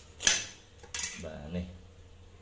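Steel kitchen knife set down on a tiled floor: a sharp metallic clank about a quarter second in, then a lighter clink about a second in.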